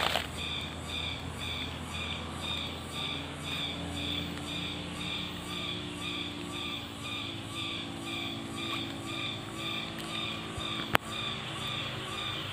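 Forest ambience: a high, pulsing animal call repeating steadily about two or three times a second, with a single sharp click about eleven seconds in.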